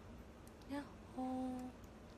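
A young woman's voice humming: a brief hum about three-quarters of a second in, then one steady held note for about half a second.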